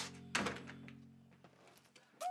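A door pushed shut with a single thunk about a third of a second in, over sustained background music chords that fade away.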